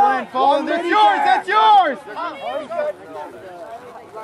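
Sideline voices shouting, loudest in the first two seconds, then quieter talk and chatter.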